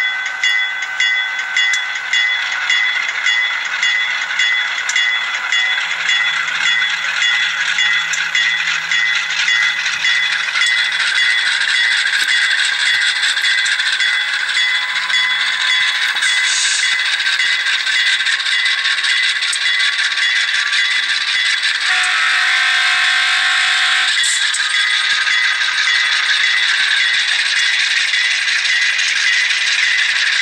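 ESU sound decoder's GE Dash 8 diesel engine sound, played loud through a tiny speaker in an N scale model locomotive. It pulses quickly at first, then builds into a steadier, louder run as the train gets moving, under the rattle of the model train rolling on its track. A horn sounds for about two seconds around two-thirds of the way through.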